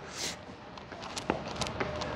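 Footsteps on stone paving, a few faint sharp steps about a second in, over a steady quiet outdoor background, with a short breath just at the start.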